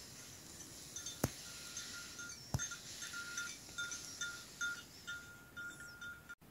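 A small metal bell tinkling in short, irregular strokes, all at one pitch. Two sharp clicks come early in the sequence, about a second apart.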